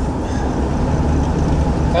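Steady low rumble of engine and road noise inside the cabin of a moving vehicle.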